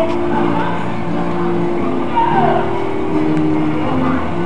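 Live band music carrying down the street, with held notes changing about once a second, mixed with crowd chatter.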